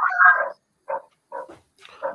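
Short, broken fragments of voices over a video call: a trailing word in the first half second, then a few brief separate sounds with gaps between them.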